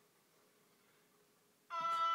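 Chamber opera recording playing through an iPad's small speaker: a near-silent pause, then near the end a sustained high note starts abruptly.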